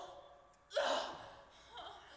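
A woman sobbing: a sudden, sharp gasping sob about a second in that trails off, with a fainter whimper near the end.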